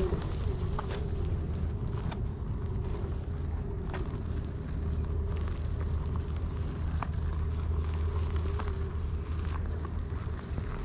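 Fungineers SuperFlux hub motor of a VESC-controlled one-wheeled board whining steadily under heavy load on an uphill climb, its pitch wavering slightly. Beneath it is a low rumble, with scattered ticks of grit under the knobby tyre on the dirt track.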